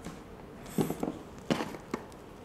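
Handling noise from a small plastic Wi-Fi repeater and its power cable on a wooden tabletop: two short, light knocks, one a little under a second in and one about a second and a half in.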